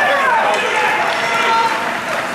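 Voices calling out at an ice hockey game, one falling call near the start and short held calls later, over a steady rush of rink noise.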